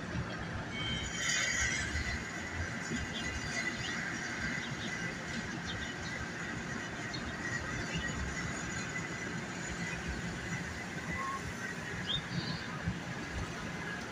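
Steady city street traffic noise with a low rumble. There is a brief high squeal about a second and a half in, and a few short high chirps later on.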